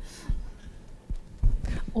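Handling noise from a handheld microphone being passed to an audience member: irregular low thumps and rubbing, with faint voices in the room.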